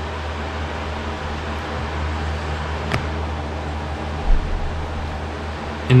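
Steady low hum and hiss of background room noise, with a single sharp click about halfway through and a brief low bump a little after.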